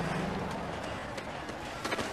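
Scuffling and shuffling feet on sandy ground as men grapple and restrain someone, with indistinct voices in the commotion and a low hum that fades out early on.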